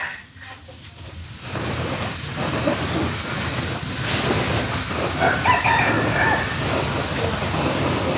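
Steady outdoor background noise with a few short calls from chickens, clearest about five seconds in.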